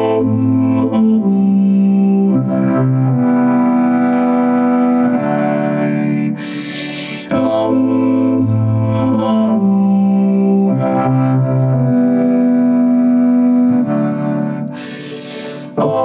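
Synthesizer chords played on a keyboard, held and changing every second or two over a low sustained bass. The music dips twice, about six seconds in and near the end, with a short hiss.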